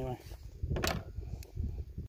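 Wind buffeting the microphone as a low, uneven rumble, with one sharp crack a little under a second in.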